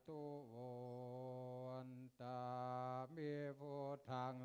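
Group of Buddhist monks chanting in Pali in unison, male voices holding long syllables on an almost steady pitch, with a short break about two seconds in.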